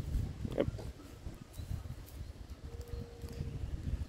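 A donkey grazing close up, cropping and chewing grass, heard as irregular low crunching and rustling.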